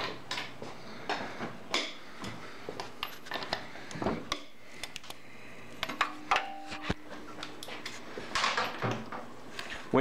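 A socket and breaker bar are clinking and knocking on a motorcycle's rear wheel bolts as they are worked loose, giving scattered metallic clicks. A short ringing tone comes about six seconds in.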